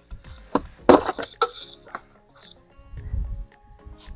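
Hard plastic knocks, clicks and rattles from a car's rear bumper and parking-sensor housing being handled, loudest as a quick cluster about a second in, with a dull thump a little after three seconds. Soft background music plays underneath.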